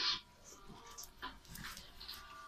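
Small dog making a few short, faint sounds as it pounces on and tugs at a round cushion.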